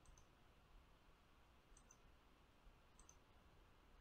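Near silence with a few faint computer mouse clicks: one right at the start, then two more spread over the next few seconds.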